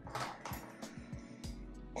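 A few light clicks and taps of the small aluminium parts of a Weipu SA12 aviator connector being handled and fitted together, over a faint low hum.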